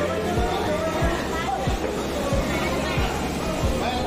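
Background music with a steady bass beat, about three beats a second, and a voice over it.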